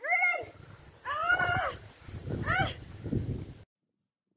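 A child's high-pitched voice shouting three drawn-out calls, each rising and then falling in pitch, as if calling someone across a garden. A low rumble runs under the last two calls, and the sound cuts off abruptly near the end.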